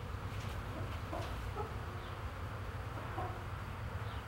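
Faint barn ambience: flies buzzing, with a few soft, scattered clucks from poultry over a low steady rumble.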